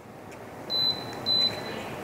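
Comfort Zone oscillating globe fan's control panel beeping twice, short and high-pitched about half a second apart, as the remote's button presses set its timer. Under the beeps, a faint steady hiss of the fan's airflow.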